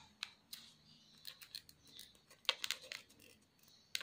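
Tailor's chalk drawing a marking line on a fabric face mask, with the fabric handled between strokes: faint, scattered short scratches, most of them in a cluster about two and a half seconds in.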